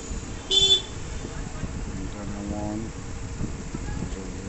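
Ingenico iWL220 card terminal giving a short, high keypress beep about half a second in as its green enter key is pressed, over a steady background din. A brief low hoot sounds in the background just after two seconds.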